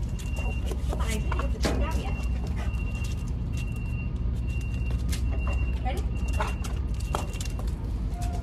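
A dog's claws clicking and scrabbling on a concrete floor as it jumps for a ball and then runs off after it. Underneath is a steady low rumble, and a thin high tone keeps cutting in and out.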